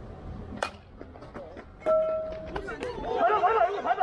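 A single sharp crack of a bat hitting a pitched baseball, followed by players shouting, several voices overlapping and loudest near the end.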